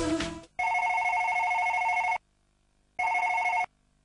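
Office telephone ringing with an electronic trill. There is one long ring of about a second and a half, then a shorter ring that is cut off as the receiver is picked up.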